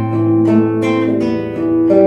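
Nylon-string classical guitar fingerpicked in an arpeggio. A low bass note is plucked at the start and rings on under single higher notes picked one after another, about two or three a second.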